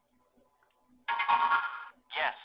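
A short electronic chime from a LEGO Mindstorms EV3 brick's speaker, about a second long and made of several steady tones at once, as a program is downloaded to the brick and set running. It starts about a second in.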